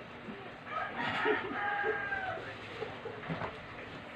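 A rooster crows once, faintly, starting just under a second in and holding a steady pitch for about a second and a half. A few light knocks follow.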